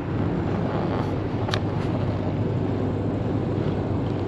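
In-cabin drone of a 1989 Audi Coupé GT with its 2.2-litre five-cylinder engine, cruising at motorway speed: a steady mix of engine, tyre and wind noise. One short click about a second and a half in.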